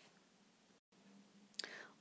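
Near silence: faint room tone broken by a short dead gap a little under a second in, then a woman's soft in-breath near the end.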